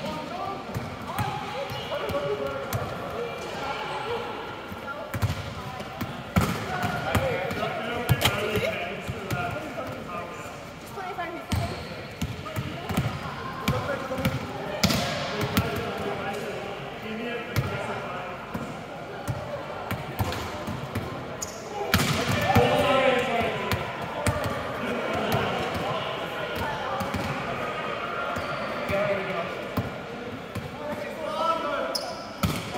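Volleyballs being struck by hand and bouncing on the hall floor: many irregular thuds, with players' voices throughout.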